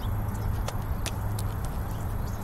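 Steady low rumble and hiss of outdoor background noise, with a few faint light clicks.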